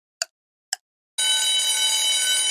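Quiz countdown-timer sound effect: two ticks half a second apart, then a steady bell-like alarm ring starts just over a second in as the countdown reaches zero and time runs out.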